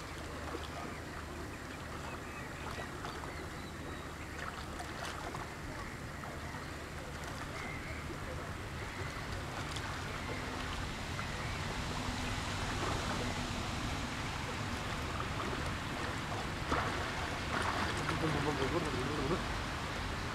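Small waves lapping against a rocky shore, with splashing from a swimmer's strokes that grows louder in the second half as the swimmer comes closer.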